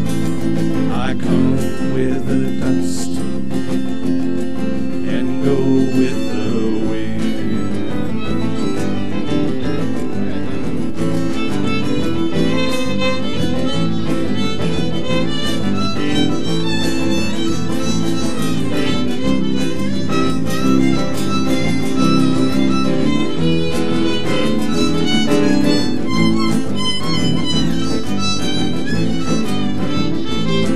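Live acoustic string band playing an instrumental passage, fiddle to the fore over strummed acoustic guitars.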